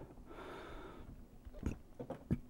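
A soft breath out through the nose for about the first second, then a faint click of small plastic dropper bottles being handled on a tabletop a little past halfway.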